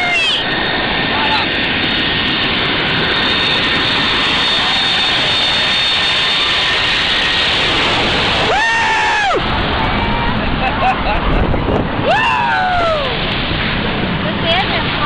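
Jet airliner landing low overhead: its engines roar with a steady high whine as it approaches and passes directly above about eight seconds in, and the hiss eases soon after. A voice cries out twice over the roar, near the pass and again a few seconds later.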